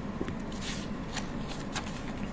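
Pages of a paper book being leafed through: several short paper flicks and rustles close to the microphone.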